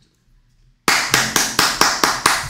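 Hands clapping in a steady run of about four claps a second, starting about a second in.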